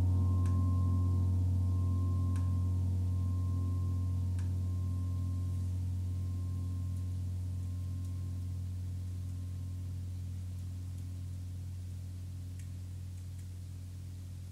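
Large gongs dying away after being played: a deep, steady hum with a slow, regular wavering, fading gradually throughout, with a few faint ticks.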